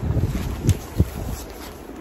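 Thick printed fabric tapestry being handled and spread out close to the microphone: an irregular rustling and brushing of heavy cloth, with two sharp taps about a second in.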